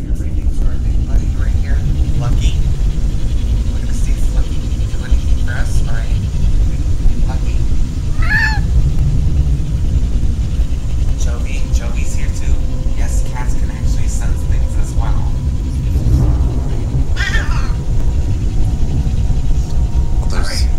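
A house cat meowing twice, about eight seconds in and again about seventeen seconds in, each a short call that bends in pitch. A steady low rumbling noise runs under it.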